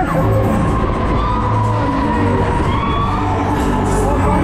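Loud fairground ride music with a steady, heavy bass, with riders cheering and shouting over it on a spinning Break Dancer ride.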